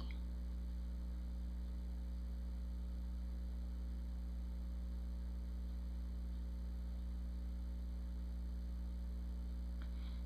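Steady electrical mains hum with a stack of even overtones, unchanging throughout; no other sound stands out above it.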